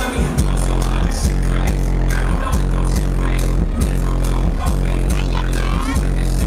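Electronic dance music played loud over a club sound system, with a heavy sustained bass line coming in just after the start under a steady beat.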